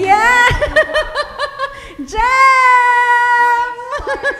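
A woman's high-pitched laughter that pulses rapidly, then one long high note held steady for about a second and a half.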